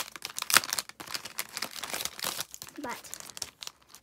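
A clear plastic packaging sleeve crinkling and rustling as it is handled and pulled open, in quick irregular crackles.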